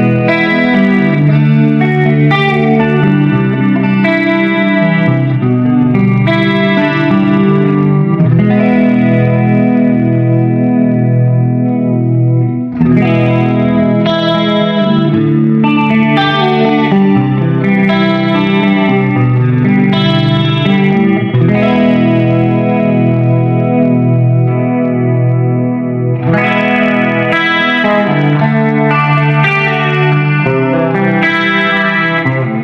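Artist TC59 T-style electric guitar with humbucking pickups, played through effects in a continuous chordal passage as a pickup demonstration. There is a brief break about thirteen seconds in.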